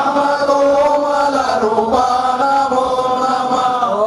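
Devotional chanting of an Ayyappa bhajan, sung in long held notes that shift in pitch about halfway through.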